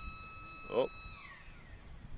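Flood-control gate machinery running with a steady high whine that slides down in pitch and stops in the second half. This is the gate going down, which most likely means the tide is about to start rising.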